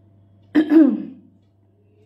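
A woman clearing her throat once, a short voiced rasp with a falling pitch about half a second in.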